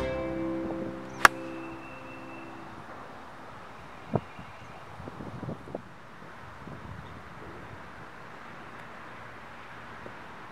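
A golf iron striking the ball on a fairway shot: one sharp crack about a second in, the loudest sound. Plucked-guitar background music fades out over the first few seconds, and a few softer knocks follow a few seconds later.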